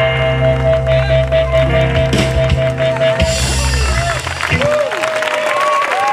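A live blues band's closing note, a harmonica holding one long steady tone over guitar, bass and drums, cuts off a little over halfway through. The audience then applauds and cheers.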